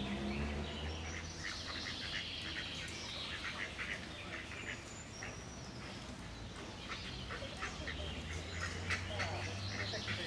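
Mallard ducks quacking on a pond in two bouts of short, rapid calls, with small birds chirping and faint distant voices.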